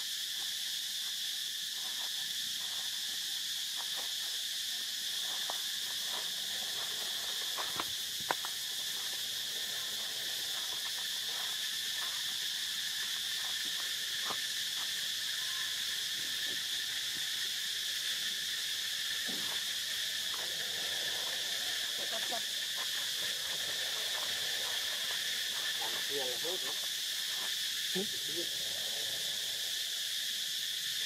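Steady, high-pitched drone of an insect chorus throughout, with scattered light clicks and rustles. In the last third come a few short wavering calls.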